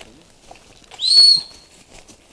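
A single short, high whistle blast of about half a second, sounded about a second in. It rises briefly and then holds one pitch. It is plausibly the signal to start play in the airsoft game.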